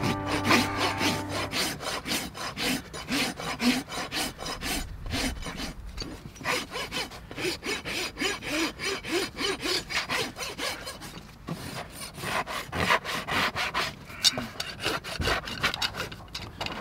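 A farrier's steel hoof rasp filing the underside of a horse's hoof flat in a long series of quick back-and-forth scraping strokes.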